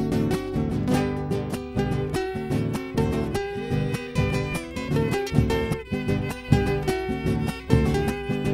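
Instrumental passage of a chacarera, Argentine folk music: acoustic guitars strummed in the chacarera rhythm, with a bombo legüero drum beaten with a stick on its head and wooden rim marking the beat. No singing until the next verse.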